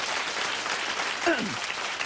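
Studio audience applauding steadily, with one short voice sliding down in pitch a little after a second in.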